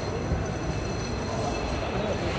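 Steady rumbling traffic noise at an airport drop-off lane, idling and passing vehicles, with faint distant voices.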